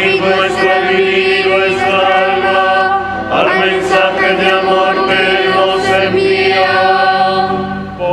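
Church choir singing at Mass in long, held notes, with a short break between phrases about three seconds in and another just before the end.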